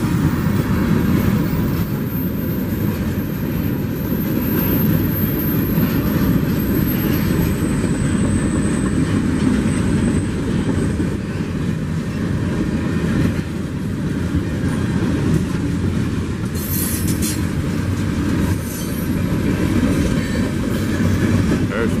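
Freight cars of a slow-moving CSX train rolling past close by: a steady rumble of steel wheels on the rails, with clickety-clack over the rail joints.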